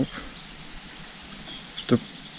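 Steady outdoor background noise with a few faint, short bird chirps.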